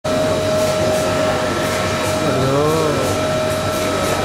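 Loud, steady exhibition-hall din: a constant hiss with a steady whine, and a voice briefly heard about two and a half seconds in.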